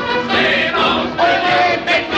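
Male vocal group singing together over a jazz dance band, from an early 1930s sound-film soundtrack with a dull, narrow top end.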